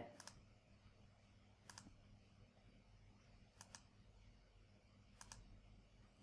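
Four faint computer mouse clicks, about one and a half to two seconds apart, each a quick pair of ticks, over near silence.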